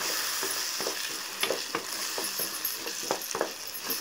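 Tomato and onion masala sizzling in a pan as a spatula stirs it, with a steady frying hiss and irregular scrapes and taps of the spatula against the pan.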